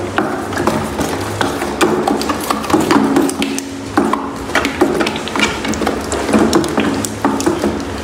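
A wooden stick stirring thick paint in a bucket, scraping and knocking against the bucket's sides in quick, irregular clicks several times a second as red tint is mixed into white paint.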